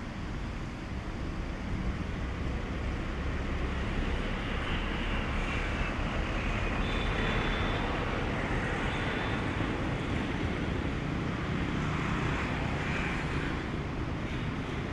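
A steady low engine rumble that builds over the first few seconds and then holds, with faint high tones in the middle.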